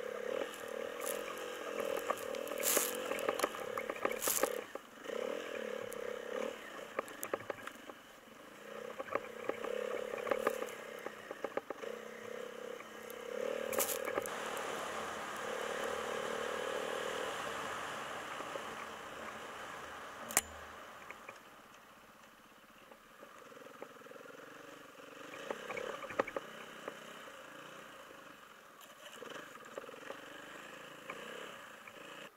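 A small vehicle's engine runs as it is driven over a snowy trail. Its drone swells and eases in spells of a few seconds, and is quieter in the last third. Scattered clatters and knocks come from the ride, with one sharp knock about two-thirds of the way through.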